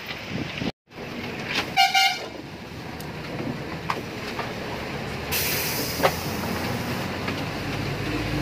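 A vehicle horn gives a short toot about two seconds in, over the steady running noise of a vehicle ride on a hill road.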